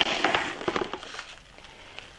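Plastic cling wrap being handled, a quick run of short crinkles and crackles that thin out and fade toward the end.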